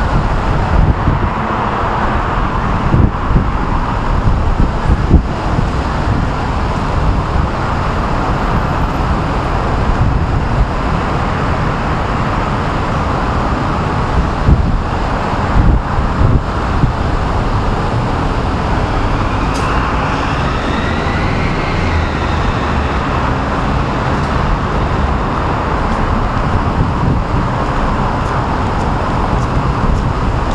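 Steady noise of city road traffic with a gusty low rumble of wind on the microphone. About two-thirds of the way through, a passing vehicle adds a faint tone that rises and then falls in pitch.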